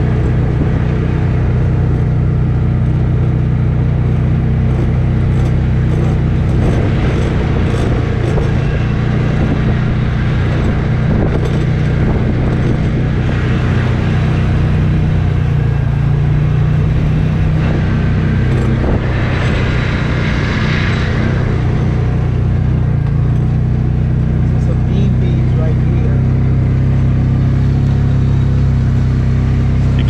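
Side-by-side utility vehicle's engine running steadily as it drives along, a constant low drone with road noise, and a brief louder hiss about twenty seconds in.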